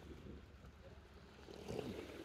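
Faint outdoor ambience: a steady low wind rumble on the phone's microphone, with a soft handling rustle near the end.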